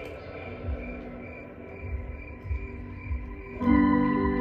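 A film trailer's soundtrack played through cinema speakers: crickets chirping steadily, about twice a second, over a faint held drone and low irregular thuds. About three and a half seconds in, loud sustained chords of music swell in.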